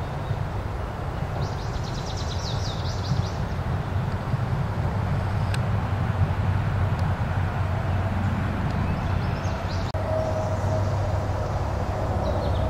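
A steady low rumble throughout, with two short runs of rapid, high peeping from Canada goose goslings, about a second in and again from about eight and a half seconds.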